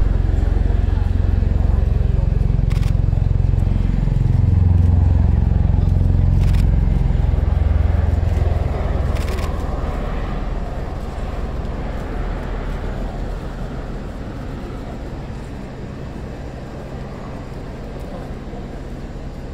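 CV-22 Osprey tiltrotor flying past in a display, its deep rotor drone loudest in the first half. The drone drops in pitch about four seconds in as the aircraft passes, then fades as it moves away.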